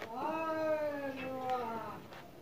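Domestic cat meowing once: a single long meow of about a second and a half that slides slightly down in pitch.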